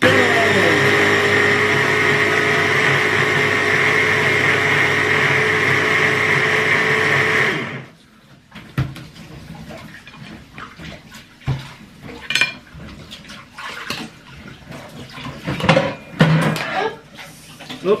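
Electric hand blender on a chopper bowl running steadily for about seven and a half seconds, then cutting off. Light clicks and knocks follow as the bowl and blades are handled.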